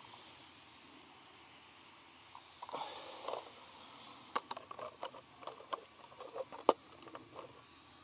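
Plastic body shell of a Helion Avenge 10MT RC monster truck being fitted back onto the chassis by hand: a brief rustle, then a run of short sharp plastic clicks and taps, the loudest one near the end.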